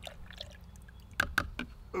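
Liquid fertilizer poured from a small cup into a plastic measuring jug of water and liquid calcium, a soft pour followed by three or four sharp clicks in the second half.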